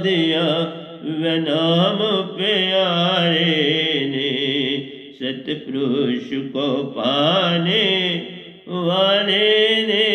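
An elderly man singing a Hindi devotional bhajan into a microphone, in long, drawn-out phrases with wavering held notes and short pauses for breath between them.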